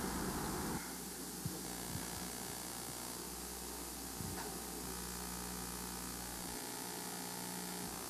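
Steady low electrical hum and hiss of room tone, with a few faint clicks.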